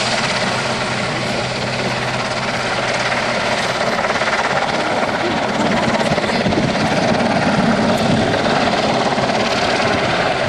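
Royal Navy Merlin HM.1 helicopter flying a display, its rotors and turbine engines making a loud, continuous noise that grows a little louder about halfway through.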